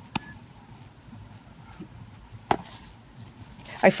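A baseball smacking into a leather glove twice, about two and a half seconds apart, the second catch louder.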